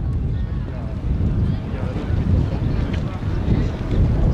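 Wind buffeting a camcorder microphone outdoors: a heavy, steady low rumble.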